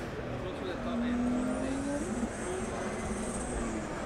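A vehicle engine running, its pitch rising slightly about a second in and holding higher before easing off near the end, over faint crowd chatter.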